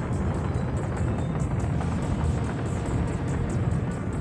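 Steady, deep roar of an F-1 rocket engine firing on a static test stand.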